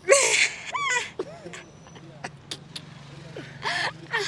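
A woman's loud, high-pitched laughter: a shrieking burst at the start, a second shorter burst a moment later, and another near the end.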